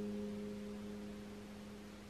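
Background piano music: a held chord slowly fading away.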